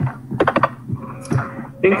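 Computer keyboard being typed on: a quick, irregular run of sharp key clicks, picked up by the presenter's microphone.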